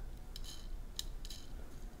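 A few faint, light clicks from fingers handling a small die-cast Hot Wheels toy car.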